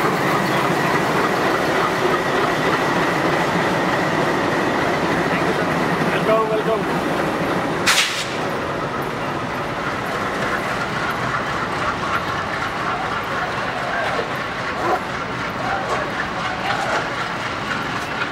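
A diesel locomotive runs steadily at a station platform, mixed with crowd voices. A sharp click comes about eight seconds in, and after it the low engine rumble is weaker.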